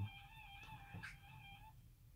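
Faint held high tones, several steady pitches sounding together, that stop just before the end, over a low background hum.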